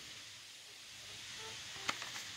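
Quiet background hiss, with one short click near the end.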